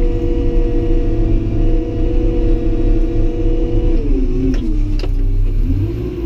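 Caterpillar D5 bulldozer's diesel engine and drive running steadily, heard from inside the cab with a deep rumble under a steady whine. About four seconds in the pitch drops, then climbs back up near the end, with a few light clicks.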